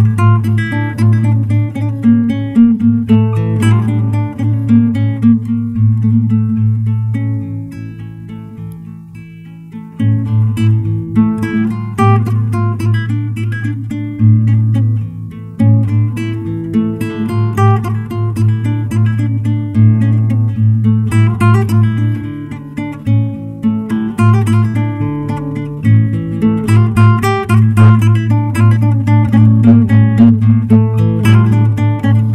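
Nylon-string classical guitar played fingerstyle: a plucked melody of a Black Sea folk tune over repeated low bass notes. Around a third of the way in the notes ring out and fade for a couple of seconds, then the playing picks up again loudly.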